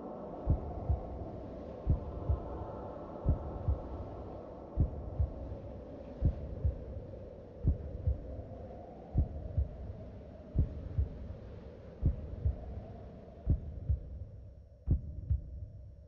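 Heartbeat sound effect, a double thump about every second and a half, over a low droning hum that fades away near the end.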